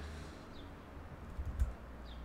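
A few quiet computer keyboard clicks, clustered about one and a half seconds in, over a low steady hum.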